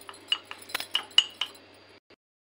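Steel spoon clinking against the inside of a glass mug while stirring custard powder into a little milk: about half a dozen light, ringing clinks.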